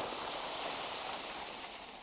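A pile of dried tea-oil camellia fruits rattling and rolling as a long-handled wooden rake is dragged through them across a plastic sheet. It makes a steady, dense rustling rattle that fades a little near the end.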